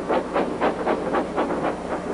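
Steam locomotive puffing, about four chuffs a second, over a low steady hum.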